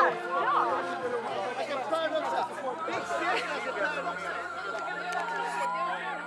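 Several people talking at once: overlapping group chatter.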